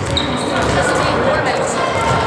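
Basketballs bouncing on a wooden gym floor amid players' voices, in the echo of a large sports hall.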